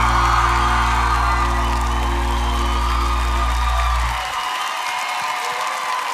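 The closing chord of the song's backing music held and then cut off about four seconds in, with a studio audience cheering and applauding over it, the cheering carrying on after the music stops.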